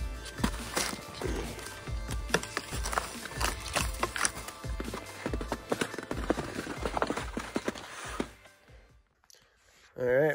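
Skis skating and clattering over patchy snow, dirt and branches, with many irregular knocks and scrapes, under background music. Everything fades to near silence about eight seconds in.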